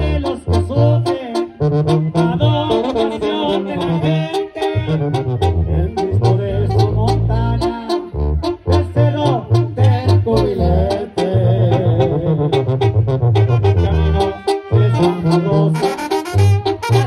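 Live Mexican banda music: trumpets and trombones play the melody over a pulsing sousaphone bass line and steady drum hits.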